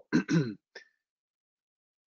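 A man clearing his throat: two short rasps in the first half-second.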